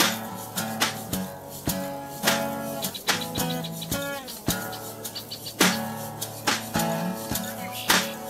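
Acoustic guitar strumming chords, with a bird chirping briefly about four seconds in.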